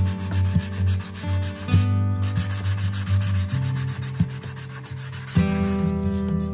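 Hand sanding block rubbed back and forth over cured Bondo body filler on a bicycle part, in quick repeated strokes that smooth the filler.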